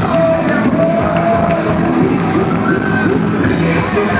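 Live Latin pop band with singing, played loud over a PA with a steady beat, heard from inside the audience, with crowd shouts and whoops mixed in.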